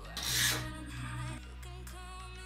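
A metal weight plate slides onto a barbell sleeve: one short rasping scrape of metal on metal, about half a second long, soon after the start, over background music.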